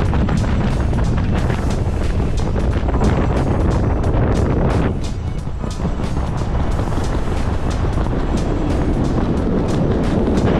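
Wind buffeting the microphone of a camera under an open parachute canopy, a steady rumble that eases briefly about halfway through, with background music carrying a steady beat over it.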